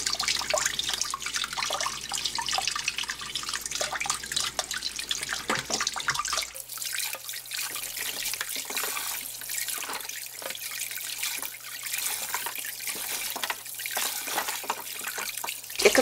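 Kitchen tap water running and splashing into a stainless steel bowl of beef bones and ox-foot pieces as gloved hands rinse them, with irregular splashes and small knocks of bone against the bowl.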